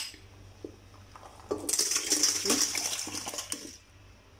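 Milk poured from a plastic container into an empty stainless steel bowl, splashing against the metal. It starts about a second and a half in and stops just before the end, after a few light knocks of the container against the bowl.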